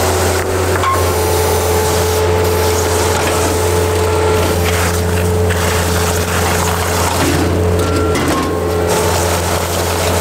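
Compact track loader's diesel engine running steadily under load, with a steady hydraulic whine, as its TerraClear rock-picker attachment digs rocks out of the soil.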